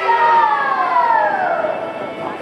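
Taiwanese opera (gezaixi) performance: one long drawn-out note sliding steadily down in pitch, with a sudden drop in level near the end.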